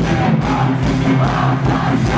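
Punk-rock band playing loudly live, full band with a steady, repeating bass line, in a gap between sung lines.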